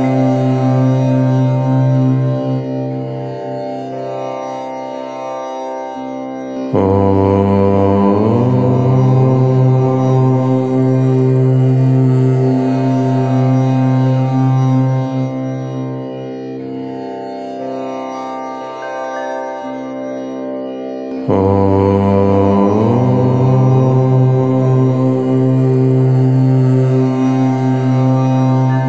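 The syllable Om chanted as a long, sustained low note. A fresh Om begins about seven seconds in and again about twenty-one seconds in, each swelling at its start and slowly fading over some fourteen seconds.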